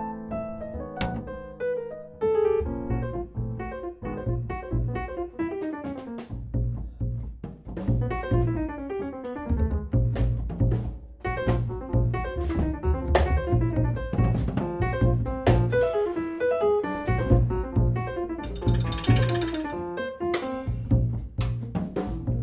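Live jazz combo playing: acoustic grand piano running quick lines over upright double bass and drum kit, with a cymbal wash a few seconds before the end.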